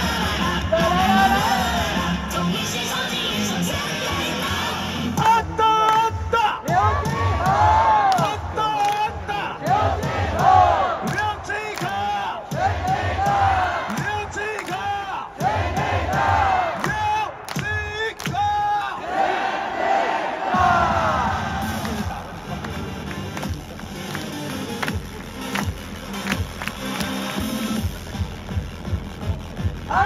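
Cheer music played over a stadium sound system, with a crowd of voices chanting and shouting along through the middle stretch, from about five seconds in to about twenty.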